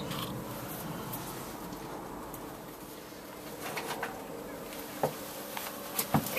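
Steady quiet background noise, with a few light clicks from the plastic pump impeller being handled, about two thirds of the way in and again near the end.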